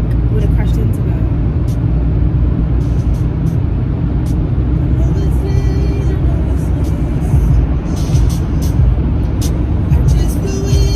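Steady low rumble of a car's engine and tyres heard from inside the cabin while driving. Music plays from the car stereo, with a woman's voice over it.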